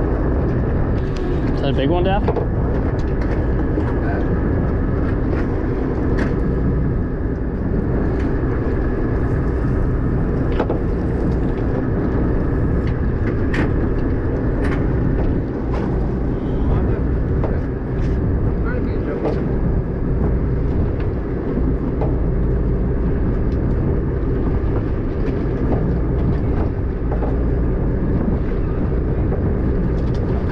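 Steady low rumble of a boat's engine running, mixed with wind and water noise, with a few light clicks and knocks.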